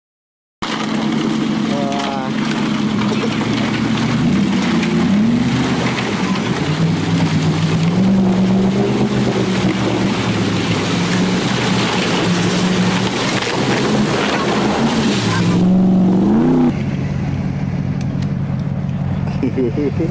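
An off-road SUV's engine running hard, its pitch rising and falling as it revs, under a loud rushing hiss. The audio comes in abruptly just after the start, and the hiss drops away sharply near the end while the engine carries on. Voices call out briefly a few times over it.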